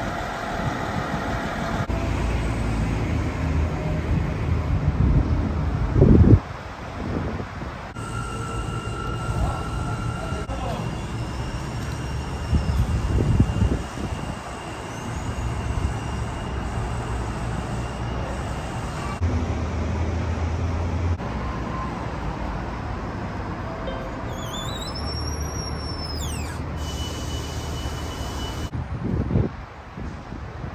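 Background ambience in a series of short cuts: a steady low hum with traffic-like noise and a few thin steady electronic tones. There is a loud thump about six seconds in and a short chirping glide near the end.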